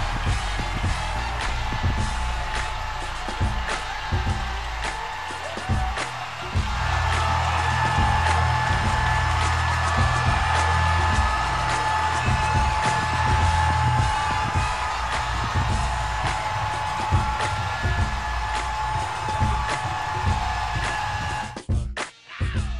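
Highlight-reel music with a steady beat over a loud, continuous crowd roar from an arena celebrating a championship win. A long steady tone comes in about seven seconds in and holds until near the end.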